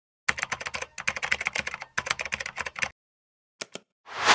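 Computer keyboard typing sound effect: rapid keystrokes for about two and a half seconds, with two brief pauses. Two quick clicks follow near the end.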